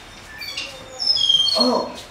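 A quick run of short, high, bird-like chirps, some gliding in pitch, followed near the end by a brief vocal sound.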